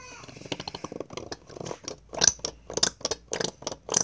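Plastic shampoo bottle being squeezed over a small lid, giving a run of irregular clicks and crackles, with little or no shampoo coming out of the nozzle. The loudest clicks come about halfway through and at the end.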